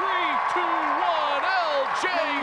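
Excited shouting from the play-by-play announcer calling a touchdown run, over a cheering stadium crowd.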